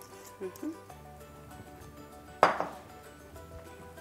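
Soft background music with one sharp clink of kitchenware, ringing briefly, about two and a half seconds in.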